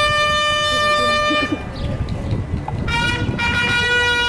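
School marching band's bugles sounding long held notes over drums. The bugles break off about a second and a half in and come back in on a higher note near the three-second mark.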